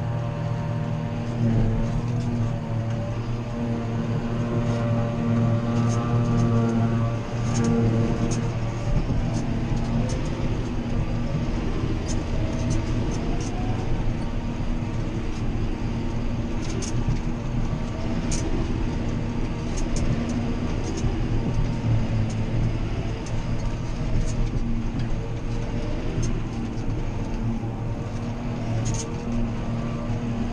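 John Deere 7530 tractor's six-cylinder diesel running steadily, heard from inside its cab, with the steady drone of a self-propelled forage harvester working close alongside and a scattering of light ticks.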